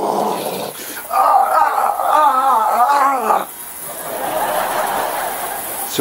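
Ultrasonic cleaner running just after being switched on, with a loud, harsh buzz that warbles in pitch for a couple of seconds in the middle.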